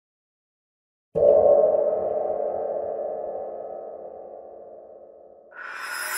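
An electronic logo sting: a sudden pitched, synthesized hit about a second in that rings and slowly dies away over about four seconds, then a rising whoosh near the end.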